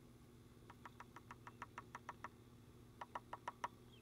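Faint light clicks, about six a second, in two runs: a longer one of about ten clicks and a shorter one of about five near the end. They come as the cut-open hull of a Brenneke 28 gauge shotshell is shaken to empty its powder charge onto a wooden board.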